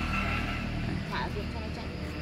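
Steady low hum of an engine running, with a brief faint voice about a second in.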